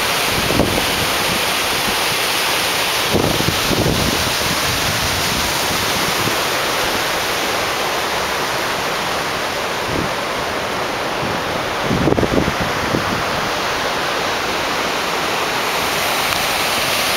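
Steady rushing of whitewater at Thunderhouse Falls, a large river cascade running over granite ledges at low water. Low wind buffeting on the microphone comes through briefly a few times, most strongly about three to four seconds in and again about twelve seconds in.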